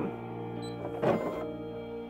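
Background music, with a brief mechanical whir about a second in as the Baby Lock Soprano sewing machine drives its needle down into the fabric.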